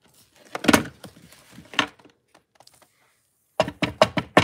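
Two sharp knocks, about a second apart, then a quick cluster of clicks and knocks near the end, as a hardcover art journal is handled and tipped on a craft desk to shake off loose embossing powder and glitter.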